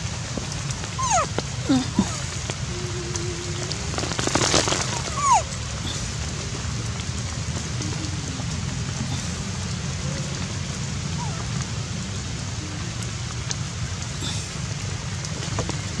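Steady rain falling on forest foliage. A few short, high gliding calls come through it about one to two seconds in and again around four to five seconds in.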